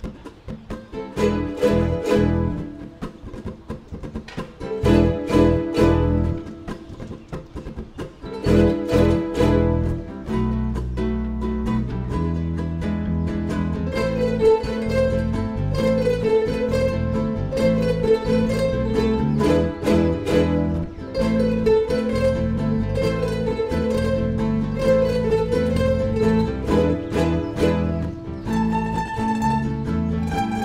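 A children's ukulele ensemble playing an upbeat song: short bursts of strummed chords broken by pauses, then from about ten seconds in a steady strummed rhythm, with a melody line over it from about fourteen seconds.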